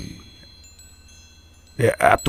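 Wind chimes ringing softly as a sound effect: several high, clear tones come in one after another and linger. A voice starts just before the end.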